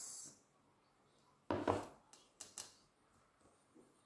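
A short rustle, then a few light knocks as a bowl of rice is set down on the dining table.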